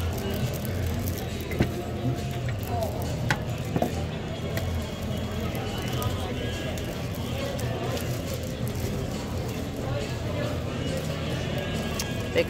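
Steady background chatter and noise of a busy outdoor market, with a few sharp clicks and crinkles from plastic-sleeved paper packets being flipped through by hand.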